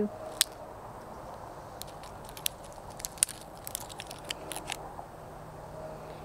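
A dry green bean pod, left to dry on the vine for seed, being cracked open and shelled by hand: a scattered run of short sharp crackles and clicks as the brittle pod breaks.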